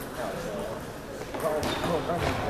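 People talking close by, with a couple of sharp clicks of a table tennis ball bouncing about one and a half seconds in.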